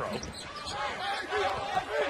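Live basketball game sound: a ball being dribbled on a hardwood court under the murmur of the arena crowd.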